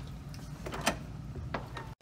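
A door being handled: a few sharp clicks about a second in, over a steady low rumble from the handheld camera moving. The sound cuts off suddenly near the end.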